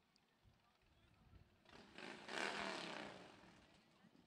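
A vehicle passing faintly, swelling up to a peak about two and a half seconds in and then fading away.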